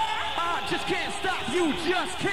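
Live rave recording in a break with the bass and beat dropped out: a quick run of short rising-and-falling vocal calls, about four a second, over a faint held tone.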